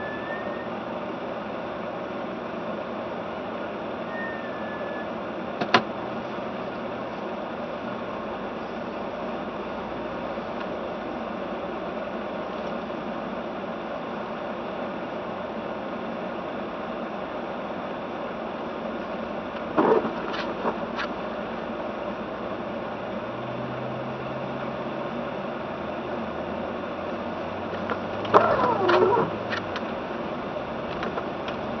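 Inside a car's cabin as it drives slowly through fresh snow: a steady hiss of engine and road noise. There is a sharp click about six seconds in and a few short, louder sounds near the middle and near the end.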